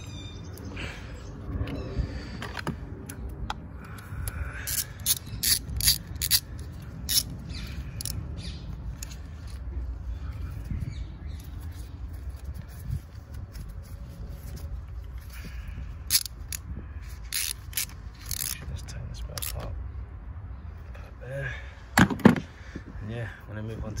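Ratchet wrench clicking in short bursts as a socket on an extension turns a coil-pack bolt on a small four-cylinder petrol engine, with two sharp knocks near the end.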